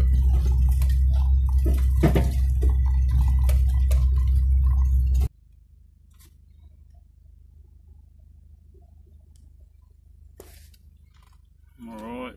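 Inside a vehicle driving on a rough dirt track: loud low engine and road rumble with knocks and rattles from the bumps. It cuts off abruptly about five seconds in, leaving only a faint low hum.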